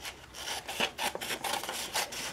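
Scissors cutting through a sheet of construction paper in a run of short, uneven snips.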